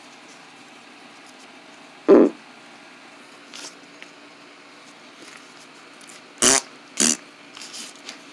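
Spitting noises made with the mouth: one short, low sputter about two seconds in, then two sharp spits half a second apart near the end, over quiet room tone.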